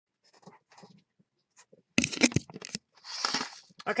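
A fabric tote with a canvas lining being handled and laid out: a few faint rustles, then a loud crinkling and crunching about two seconds in, and a softer sliding swish of cloth just after.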